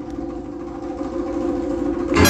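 A jazz big band's horns, saxophones, trumpets and trombones, holding one long, steady chord, the sustained closing chord of the tune.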